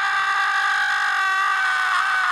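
A cartoon character's long scream, "Ah!", held on one steady high pitch.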